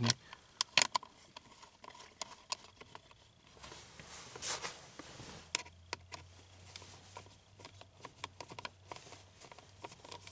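Faint, scattered small clicks and taps of hand work on a bare steering-wheel hub: a plastic cruise control switch and its small Torx screws being handled and fitted.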